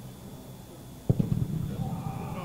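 A football kicked hard once in a penalty kick, a single sharp thud about a second in, followed by a stretch of louder rough noise and voices.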